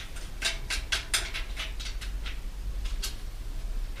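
Irregular sharp metallic clicks and taps from hands working on bicycle parts during an inner-tube change, over a steady low hum.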